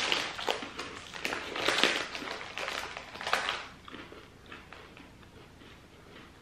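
Crunching of hard baked pretzel snacks (Combos) being bitten and chewed, with crinkling of the plastic snack bag being handled; dense crackling for the first three and a half seconds, then fainter scattered crunches.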